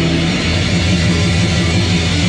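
Rock band playing loud and steady: electric guitars over a drum kit.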